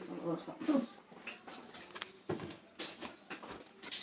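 Baseball trading cards being handled by hand: a few sharp papery snaps and flicks as cards are pulled and turned over, with a light rustle between.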